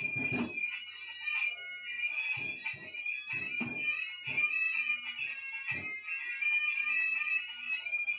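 A steady shrill tone with several overtones, wavering slightly, sounds throughout, over irregular soft thumps spaced unevenly a half second to a second or more apart.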